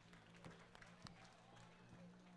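Near silence: faint outdoor background with a low steady hum and a few faint short ticks.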